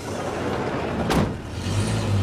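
A van's sliding side door slammed shut about a second in, over the steady hum of the van's engine idling.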